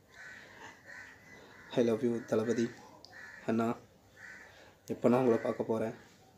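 A man's voice speaking in short phrases with pauses between them. Fainter hazy sounds fill the gaps.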